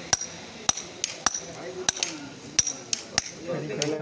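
Hand hammer striking a steel chisel on a stone block: about ten sharp, ringing metal-on-metal strikes, roughly two a second, as the stone is dressed by hand.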